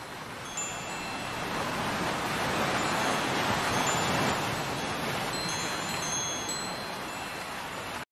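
Wind chimes ringing with scattered high notes over a rushing wash of ocean surf. The surf swells to a peak around the middle and slowly eases off.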